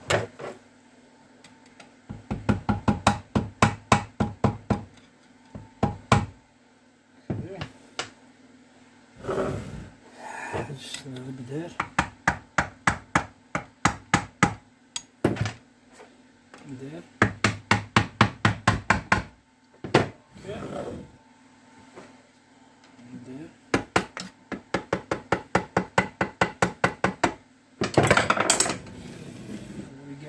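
Quick runs of hammer taps on a tool against the alloy casing of a Zündapp KS600 gearbox, knocking a cover loose. There are several taps a second, in bursts of a few seconds with single knocks between.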